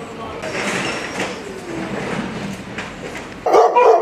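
Quieter background voices, then about three and a half seconds in a dog in a wire kennel starts barking and whining loudly.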